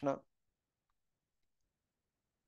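The last word of a man's speech, then near silence broken by three or four faint clicks.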